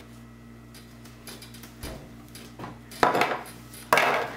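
A ceramic dinner plate set down on a wooden table: a sharp clink about three seconds in and another just before the end, with faint room tone between.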